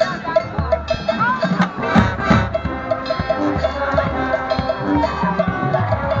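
High school marching band playing its halftime show, with a percussion part keeping a steady beat of about four short strokes a second over low drum hits and the wind parts.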